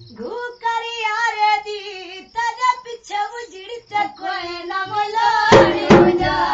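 A high-pitched singing voice holding and bending long notes of a song with the drums dropped out; the drum beat comes back in near the end.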